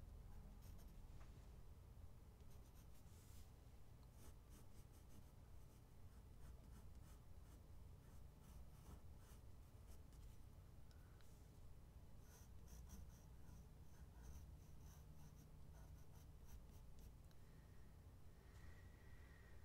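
Faint pencil scratching on drawing paper in clusters of short, light sketching strokes, over a low steady hum.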